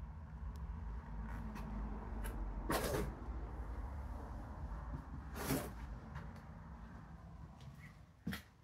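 Footsteps and movement on a debris-strewn floor: two short scuffs about three and five and a half seconds in, over a low steady rumble that fades toward the end.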